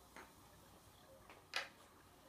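Light clicks of a puzzle piece tapping against the puzzle board as it is tried in place: a soft tap early on, then a sharper click about one and a half seconds in.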